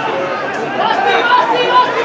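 Several voices shouting and calling out at once, overlapping with chatter, during open play in an amateur football match.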